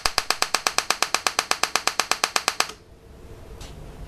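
Homemade TEA nitrogen laser firing repeatedly, each pulse a sharp snap from its electrical discharge, in an even train of about a dozen a second. The snapping stops abruptly a little under three seconds in, leaving a faint low hum.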